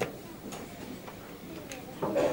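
A sharp click at the start, then a fainter click about half a second later: a wooden chess piece set down on the board and the clock tapped during a blitz move, over low voices in the room.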